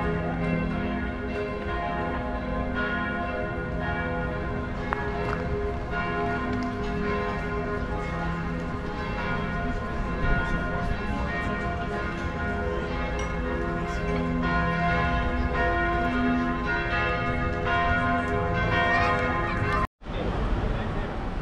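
Church bells pealing: several bells ringing together, their overlapping tones sounding and dying away continuously.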